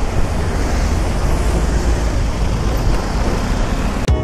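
Wind buffeting the microphone of a camera riding on a moving Vespa Primavera 150 scooter, a steady deep rumble mixed with road and traffic noise.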